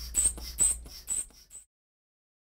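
Rubber inflation bulb of a manual blood pressure cuff being squeezed over and over, a short squeak about twice a second as the cuff is pumped up; the sound cuts off suddenly near the end.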